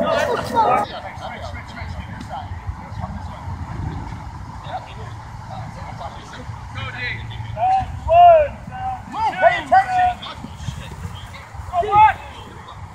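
Men shouting short calls across an open field during a flag football play, several of them in the second half. A low steady rumble runs underneath.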